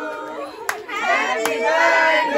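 Singing voices, with two sharp hand claps near the middle, under a second apart.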